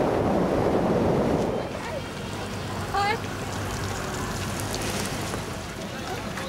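Wind buffeting the microphone in flight under a tandem paraglider, a loud even rumble that drops away after about a second and a half. About three seconds in there is a short cry from a voice.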